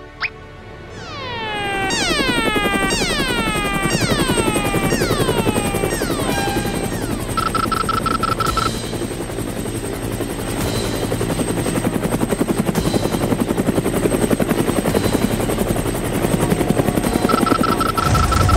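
Cartoon helicopter sound effect: a fast rotor chop builds up about a second in and keeps going steadily. A run of falling whistle-like sweeps plays over it during the first several seconds, and a short steady beep sounds about eight seconds in and again near the end.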